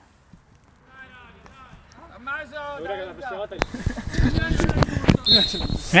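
Voices of players calling out on the pitch, faint at first, then a louder stretch of rumbling noise with knocks. A steady high-pitched tone starts near the end.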